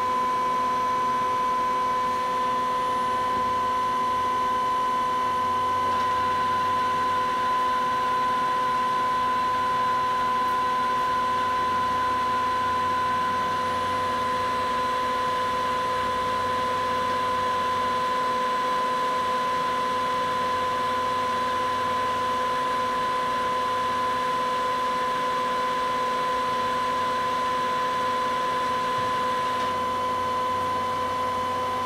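Star SV-32 CNC Swiss-type lathe running: a steady machine hum with a constant high whine.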